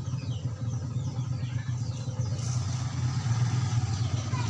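An engine running steadily at idle, a low even drone with faint short chirps above it.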